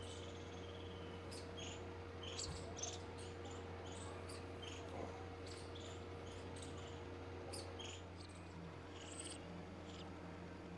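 Faint outdoor ambience: irregular short, high chirps, several a second, over a steady low hum.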